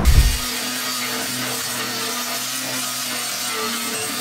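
Steady, even rasping of sanding on a white mini boat hull. A short low thump comes right at the start.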